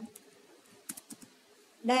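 A few short, light clicks in a quiet pause, most of them about a second in; a woman's voice starts again near the end.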